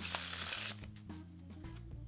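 A deck of playing cards bridged after a faro shuffle and riffled back together: a brief papery rattle of cards falling into place, lasting about the first two-thirds of a second.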